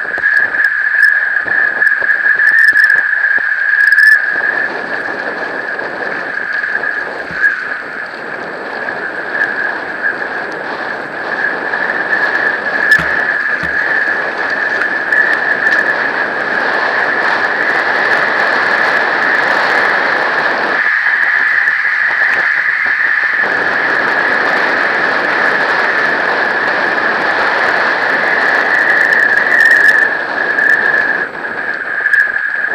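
Mountain bike rolling fast down a loose gravel track: continuous tyre noise on the gravel, with a steady high-pitched squeal running through it. The low rumble eases off briefly a little after twenty seconds in.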